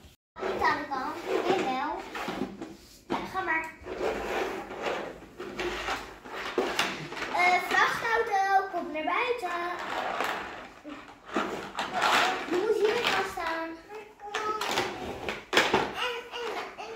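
Young children's voices, talking and babbling throughout.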